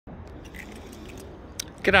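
Low steady background hum with a few faint light clicks, then a man's voice begins near the end.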